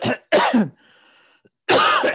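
A man coughing several times into his fist, in short rough bursts.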